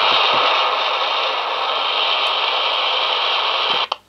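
Quansheng handheld radio with an HF receiver mod giving steady static hiss from its speaker while tuned to 21 MHz (15 m band), cutting off suddenly near the end.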